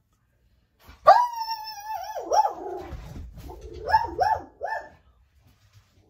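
A dog whining: one long wavering high-pitched call about a second in, then three or four short yelps near the end.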